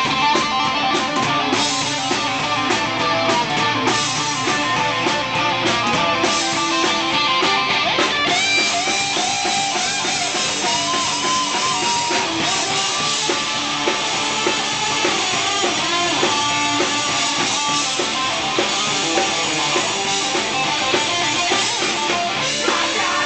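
A rock band playing live: electric guitar over a drum kit, loud and continuous, with some notes sliding in pitch near the middle.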